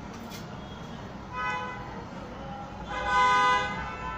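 A vehicle horn sounds twice: a short toot about a second and a half in, then a longer, louder one about three seconds in.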